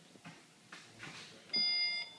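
Tesla Model S power liftgate giving an electronic beep, one steady tone about half a second long, starting about one and a half seconds in.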